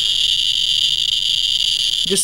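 Radiation Alert Inspector USB Geiger counter's audio clicking so fast that the clicks run together into a steady high-pitched buzz. This is a very high count rate, over ten thousand counts per minute, from the 140 keV gamma rays of a person injected with technetium-99m.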